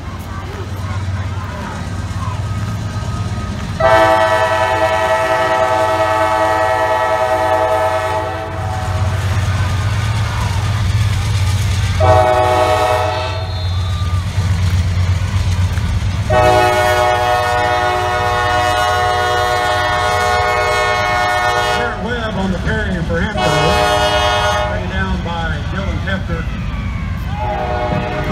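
Horn of a Norfolk Southern AC44C6M diesel locomotive sounding four blasts, long, short, long, short, over the low rumble of the slow-rolling freight train's diesel engines.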